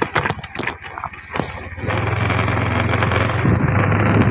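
Scattered clicks and knocks for the first two seconds or so, then a motorbike's engine running with a steady low hum and wind on the phone's microphone, getting louder near the end.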